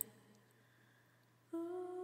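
Near silence for about a second, then a steady held tone with a few overtones comes in about one and a half seconds in: a drone in the ambient background music.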